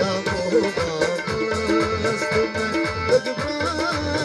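Harmonium and tabla playing an instrumental passage of a folk song, the tabla keeping a steady rhythm with low bass-drum strokes that bend in pitch.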